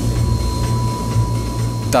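The Rolls-Royce Tyne turboprop engines of a C-160 Transall transport aircraft droning steadily in flight, heard from inside the aircraft, with a thin steady whine above the low drone.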